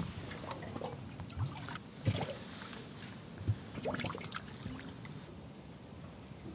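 Water lapping against the hull of a small boat riding at anchor, with a few soft, low knocks.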